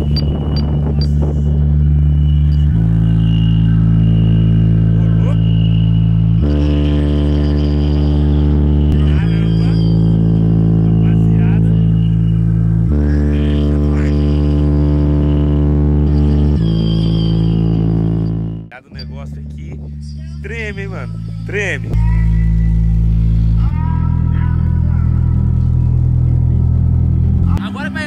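Sound-system test track played very loud through a car's trunk-mounted subwoofers and tweeters: heavy, sustained bass notes that step to a new pitch every few seconds, dropping out briefly about two-thirds of the way through.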